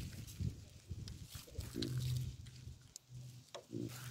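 Baboons giving low grunts, a few times, with a short click about three and a half seconds in.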